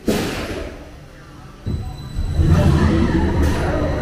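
Vekoma roller coaster train ride: a sudden whoosh with a thud at the start, then from under two seconds in a loud low rumble as the train runs on the track. Voices from the onboard audio or riders are mixed in.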